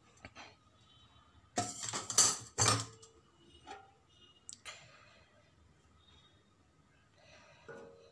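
Steel cake tin scraping and clattering against the gas stove grate as it is tilted and swirled to spread the caramel over its base: three loud scrapes close together about two seconds in, then a few lighter metallic clinks with a faint ring.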